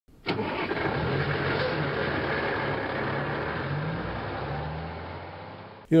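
A motor vehicle engine starting with a click and then running, slowly fading before it cuts off abruptly near the end.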